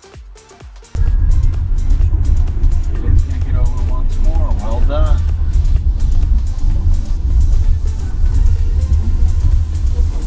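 Quiet music with a beat for about the first second, then a sudden cut to the loud, steady low rumble of road and tyre noise inside a 2023 Tesla Model Y at freeway speed. A brief voice is heard near the middle.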